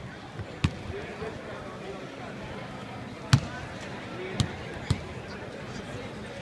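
A basketball bouncing on a hardwood court: four separate bounces at irregular intervals, the loudest a little over three seconds in.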